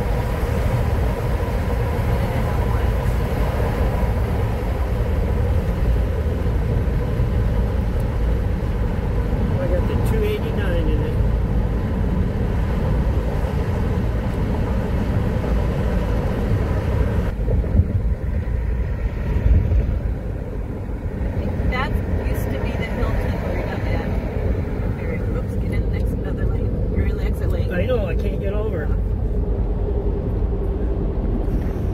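Steady road and engine rumble heard from inside a Ford Transit camper van cruising on a freeway. The higher hiss drops away abruptly a little past halfway through.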